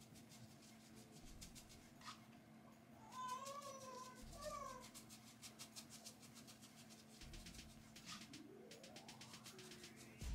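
Faint soft strokes of a tint brush dabbing hair dye onto short hair, against near-quiet room tone. About three seconds in, a short wavering pitched call in two parts, and near the end a single rising, whistle-like sweep.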